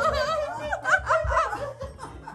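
A woman laughing in high-pitched, wavering peals that fade near the end.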